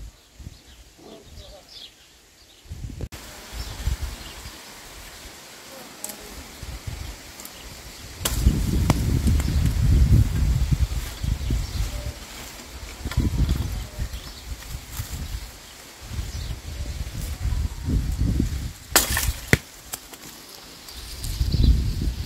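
Wind rumbling on the microphone in uneven gusts from about a third of the way in, over a steady outdoor hiss, with a few sharp clicks or snaps, the loudest near the end.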